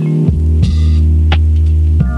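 Lofi hip-hop instrumental: a deep held bass note and a sustained keyboard chord, with a few soft drum hits. The bass steps down to a lower note shortly after the start.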